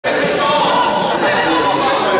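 Overlapping voices of futsal players and spectators echoing in a large sports hall, with a few squeaks from the court.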